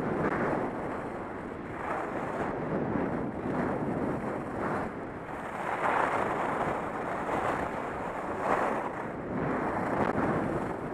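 Wind rushing over the microphone of a head-mounted camera while skiing downhill, mixed with skis scraping over packed snow. The rush swells and eases every second or so.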